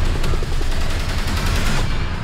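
Film-trailer sound effects: a rapid run of sharp crackles over a deep, steady rumble.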